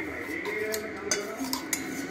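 A few sharp clinks of a utensil against a ceramic bowl, about half a second apart.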